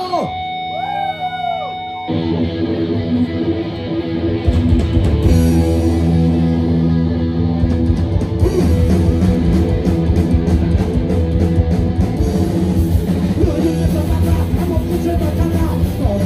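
Punk rock band playing live through a festival PA: the song opens sparse with a few held guitar notes, then the full band comes in about two seconds in, with bass and drums filling out a couple of seconds later.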